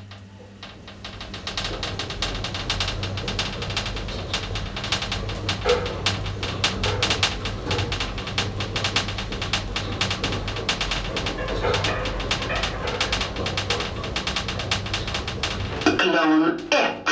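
A 1984 Otis elevator, modernised by KONE, travelling down: a steady low hum from the drive, with a fast, irregular clicking rattle from the car throughout the ride. The sound picks up about a second in as the car gets under way.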